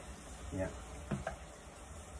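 Onions and crushed garlic frying gently in olive oil in a non-stick pan, a faint sizzle, stirred with a wooden spatula.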